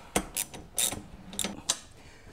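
Ratchet wrench working the nut on a garage door track's steel mounting bracket, the nut that sets how far the track sits from the door: about five sharp metallic clicks at uneven intervals.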